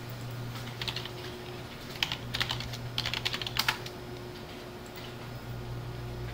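Computer keyboard typing in a few short bursts of rapid key clicks, over a steady low hum.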